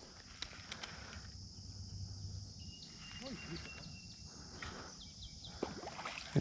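Quiet outdoor ambience: a steady high insect buzz, with a few faint clicks and a brief thin tone about halfway through.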